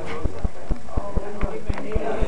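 A steady low thumping beat, about four thumps a second, with voices over it.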